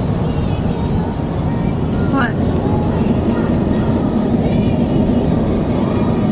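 Steady road and engine noise of a car cruising at highway speed, heard inside the cabin, with a car radio faintly playing music and a voice underneath.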